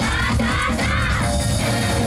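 Loud amplified yosakoi dance music playing over the stage sound system, with the dancers shouting together in group calls during the first second or so.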